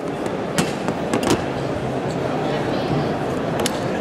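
A few sharp clicks as a large Kupilka folding knife with a magnetic catch is worked open, over a steady babble of voices.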